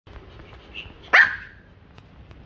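Pomeranian giving one sharp bark about a second in, rising quickly in pitch, demanding a plush toy.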